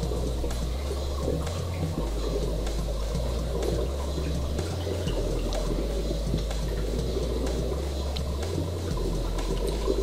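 Steady rush of running water from a reef aquarium's circulation, with a low bass line of background music underneath.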